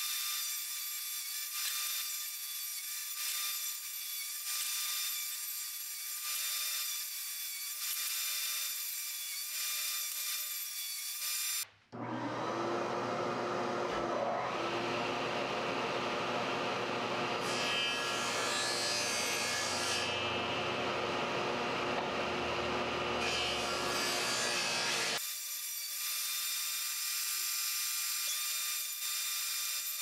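A table saw running and cutting rabbets along pine 2x2 frame stock, with a steady, high, whining saw noise. After a brief dropout about twelve seconds in, the sound turns fuller with a low hum, then changes back about twenty-five seconds in.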